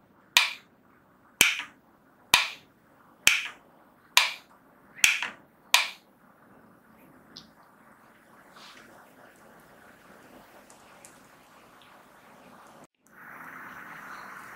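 A light switch clicked seven times, about once a second, power-cycling a smart Wi-Fi bulb off and on to reset it into its fast-flashing pairing mode; faint room hiss follows.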